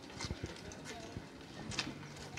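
Irregular light knocks and clicks of walking and handling noise from a handheld microphone and camera being carried along, with faint voices in the background.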